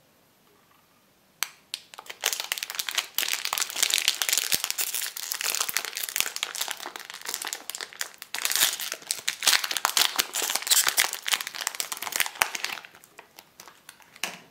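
Plastic wrapper of a chocolate-coated banana bar crinkling as it is peeled open by hand. A dense run of crackles starts about a second and a half in and dies away near the end.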